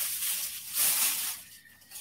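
Rustling as a garment is pulled out of the haul pile, in two hissy surges that fade away toward the end.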